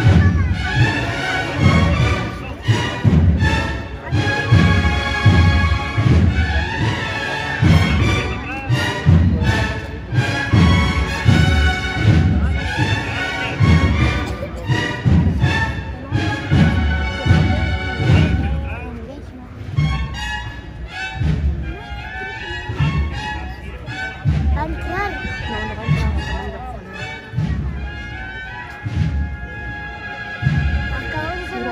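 A processional band of brass and drums playing a march, with a steady drumbeat under the melody.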